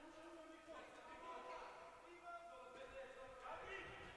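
Faint voices of players and bench calling out across an indoor handball court, over low hall noise.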